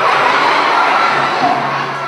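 A crowd of children laughing and shouting loudly, a burst of audience laughter at a comic stage routine.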